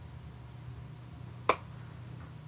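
A single sharp click about one and a half seconds in, over a faint steady low hum.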